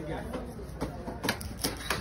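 A large knife chopping through seer fish steaks onto a wooden block: four sharp knocks in quick succession in the second half. Voices sound faintly behind.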